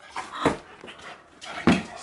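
Excited pit bull-type dog making short, strange noises, with a sharp burst about half a second in.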